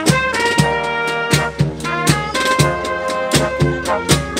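A brass marching band playing a march: trumpets and trombones carry the tune over sousaphones, with a steady drum beat about twice a second.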